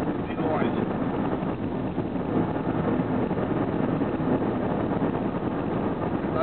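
Steady road and engine noise inside a car moving at highway speed, an even rush without distinct events.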